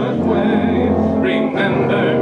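School concert band of saxophones, trumpets and other wind instruments playing held chords, the low bass note changing about one and a half seconds in.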